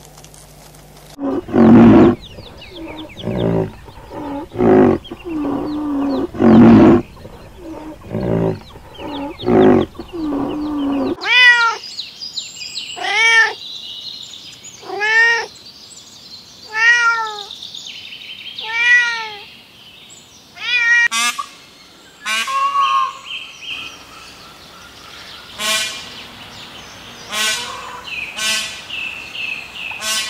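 Domestic cat meowing: about five drawn-out meows, each rising and falling in pitch, roughly two seconds apart in the middle of the stretch. Before them comes a run of loud, low-pitched animal calls about once a second, and after them assorted higher animal calls.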